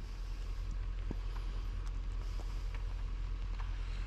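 Craftsman snowblower's small engine idling: a steady low rumble with a fast, even flutter.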